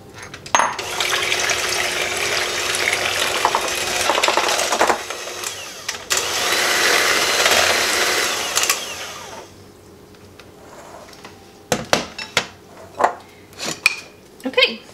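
Handheld electric mixer running in a glass bowl, beating eggs into creamed butter and sugar; it starts about half a second in, eases briefly near the middle and switches off at about nine seconds. A few sharp knocks follow near the end.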